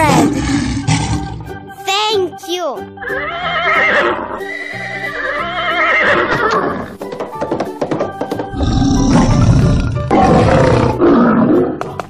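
Children's cartoon background music with animal-call sound effects over it: several wavering cries come in about two seconds in and run to around the seven-second mark, with more calls near the end.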